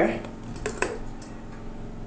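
Two sharp metallic clicks close together as the metal latch clamps on a stainless steel spice grinder's lid are undone.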